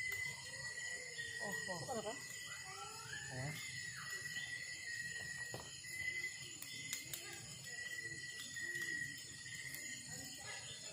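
Night insects chirring steadily throughout. Between about one and four seconds in, a voice-like call rises and falls, and a few single sharp cracks come from the wood fire.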